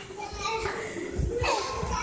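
A toddler crying and fussing, with other young children's voices.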